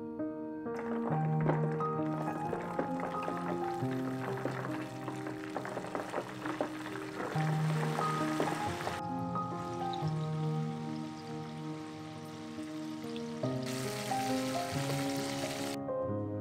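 Karaage chicken pieces deep-frying in hot oil: a dense crackling sizzle over soft background music. The sizzle cuts off abruptly about nine seconds in, and a shorter stretch of the same hiss comes back near the end.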